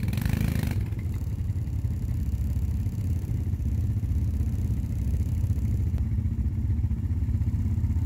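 Quad bike (ATV) engines running at a steady low speed, a low engine sound that holds nearly the same pitch throughout.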